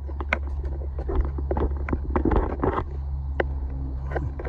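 A steady low hum under scattered short clicks and scuffs of footsteps and a handheld phone being moved.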